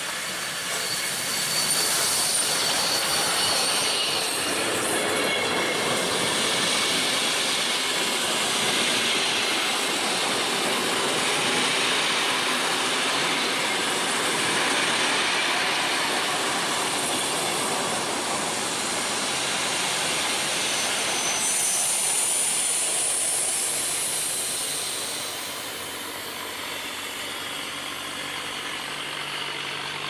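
Hr1 'Ukko-Pekka' steam locomotive no. 1009 and its train of vintage carriages rolling slowly past as it arrives at a station, wheels clacking over rail joints. High-pitched squeals from the wheels come shortly after the start and again after about twenty seconds, and the sound fades near the end as the last cars go by.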